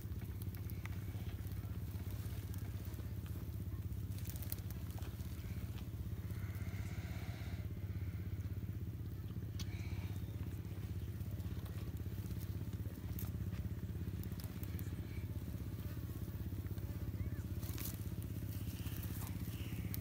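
Komodo dragons feeding on a goat carcass: scattered faint crunching and tearing clicks as they bite and pull at the meat and bone, over a steady low hum.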